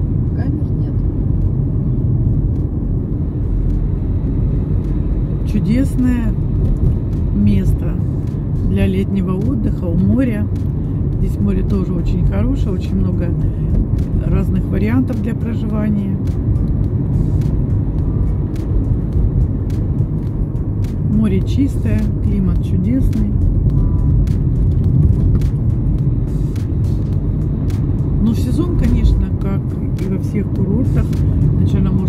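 Steady low road and engine rumble inside a moving car's cabin, with a voice or singing heard at times over it.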